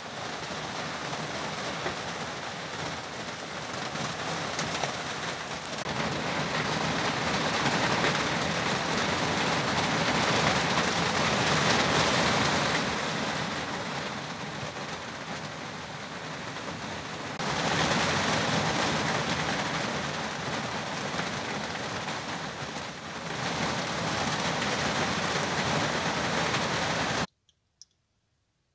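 Heavy rain pouring down during a thunderstorm at night, a dense steady hiss that grows louder and softer in several stretches and stops abruptly near the end.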